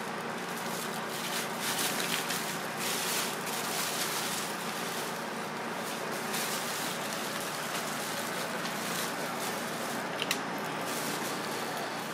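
Plastic bag and newspaper crinkling and rustling in irregular bursts as hands handle soft egg masses inside the bag, with one sharp click near the end.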